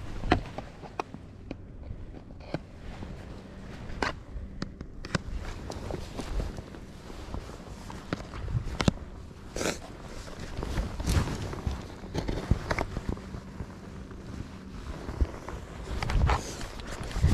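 A hollow plastic pigeon decoy being handled and fitted onto its plastic stake: scattered sharp clicks and knocks of plastic on plastic. Clothing rustles and footsteps on soft soil run under them.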